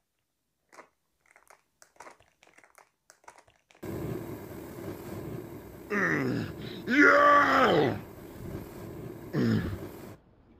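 A voice making drawn-out vocal sounds with sliding pitch: one falling, then a louder one that rises and falls, then a short one near the end. They come over a steady hiss that starts about four seconds in. The first few seconds hold only faint clicks.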